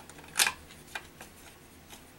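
Hard plastic toy parts clicking as a plastic roadway piece is worked into a toy figure's hand: one sharp click about half a second in, with a few fainter ticks around it.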